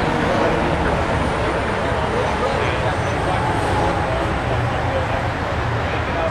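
Chatter of people nearby over a steady low engine hum, the hum growing stronger about two-thirds of the way through.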